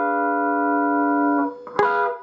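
Electric guitar ringing on a D diminished chord fretted high on the neck, its notes sustaining evenly until the chord is cut off about one and a half seconds in. A brief picked strike on the strings follows near the end.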